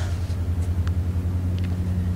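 A steady low hum with no speech, with a couple of faint ticks.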